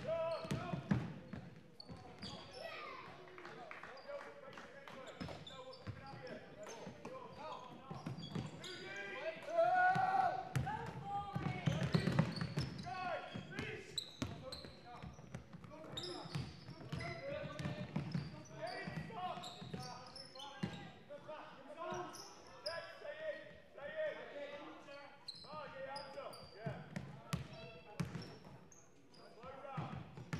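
Basketball game sounds in a large sports hall: a basketball bouncing on the wooden floor among players' and spectators' indistinct shouts and calls, echoing in the hall. The calling is loudest about ten to thirteen seconds in.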